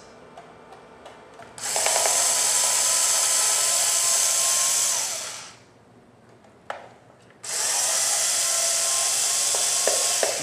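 Small cordless electric screwdriver running in two steady spells of a few seconds each, about two seconds apart, as it backs out the two small Phillips screws holding the plastic lid of a grease-system timer. A small click falls between the two runs.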